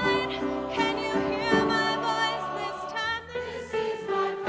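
Large mixed choir singing a pop song in harmony, with a lead singer out front and piano accompaniment.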